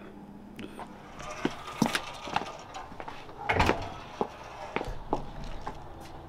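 A series of short, separate knocks and clicks over a quiet background, the loudest about three and a half seconds in.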